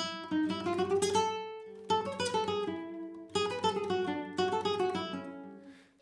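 Nylon-string Spanish guitar played fingerstyle as a solo melody, one note at a time, in a few short phrases of plucked notes. The last notes ring and fade away near the end.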